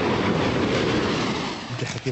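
Tanks on the move, their tracks clattering over steady engine noise, a dense rattling rumble that eases off near the end.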